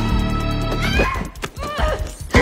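Tense horror-film score under a woman's wavering, breaking screams and cries, which start a little under a second in, with a couple of sharp knocks of a struggle.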